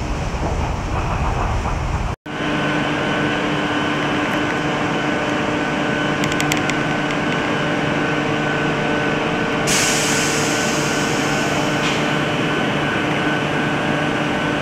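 A Renfe Cercanías electric commuter train. For the first two seconds it is heard from inside a moving carriage as a low rumble. After a sudden cut, a stopped train hums steadily beside an underground platform with held tones from its onboard equipment, a few light clicks, and a hiss that starts about ten seconds in and lasts a couple of seconds.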